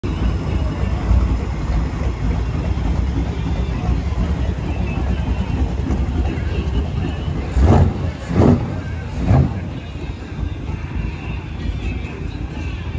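Race boat's exposed inboard V8 idling with a lumpy, low rumble, then given three short blips of throttle, rising and falling, in the last third as the boat pulls away.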